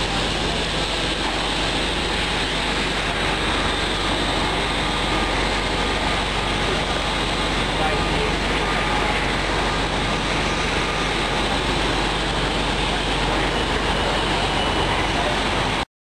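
Steady interior noise of a moving transit vehicle, an even rumble and hiss with no distinct events, with faint passenger voices underneath.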